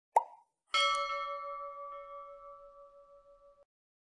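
Animated-graphic sound effects: a short cartoon pop, then a bell ding that rings with clear overtones and fades over nearly three seconds before cutting off abruptly.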